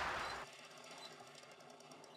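The tail of an electronic intro music sting dying away in the first half-second, then near silence with faint crackling ticks.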